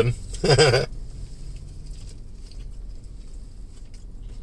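A person chewing a mouthful of taco, with faint scattered mouth clicks over a low steady hum.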